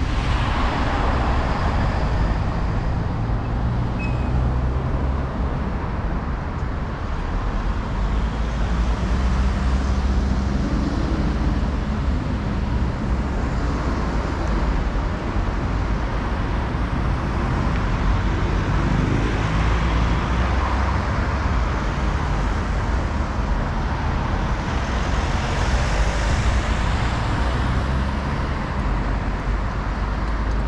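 Urban road traffic, cars driving past steadily, mixed with a low wind rumble on the microphone of a moving scooter.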